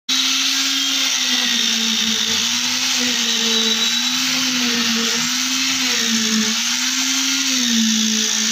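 Concrete needle vibrator running steadily, compacting freshly poured concrete, with a motor hum whose pitch wavers slightly up and down every second or so.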